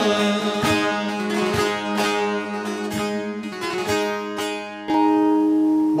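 Bağlamas (Turkish long-necked saz lutes) playing the closing instrumental bars of a Turkish folk song, with repeated plucked strokes. Near the end the music settles onto one long, steady held note.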